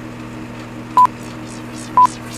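Film-leader countdown beeps: short, loud, high single-pitch pips, one a second, about a second in and again at the end, over a steady low hum and hiss.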